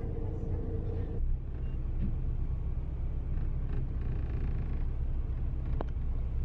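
Scania K400 coach's diesel engine idling steadily, a low hum heard from inside the upper deck of the double-decker bus. A higher droning tone drops out about a second in.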